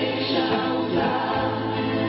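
A mixed group of men and women singing together into microphones, holding long notes over a steady musical accompaniment.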